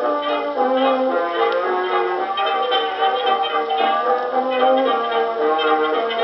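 A 1920s dance orchestra playing a fox trot from a 1926 78 rpm record, with brass carrying the tune in held notes that step from pitch to pitch and no singing.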